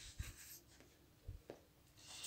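Faint strokes of a marker writing on a whiteboard: a few soft, short scrapes and a light tick about a second and a half in, otherwise near silence.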